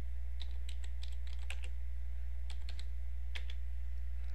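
Keystrokes on a computer keyboard as a command is typed, in two quick runs of clicks with a short gap between, over a steady low hum.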